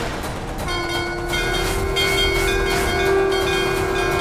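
Dramatic background score. About a second in, a long held horn-like tone enters with several bell-like ringing tones layered above it, and they sustain to the end.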